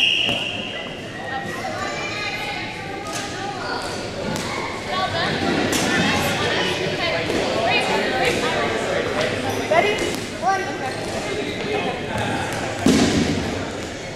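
Rubber dodgeballs thudding a few times, on the gym floor or against players, the sharpest knocks coming about ten and thirteen seconds in, under steady indistinct chatter and calls from players and onlookers.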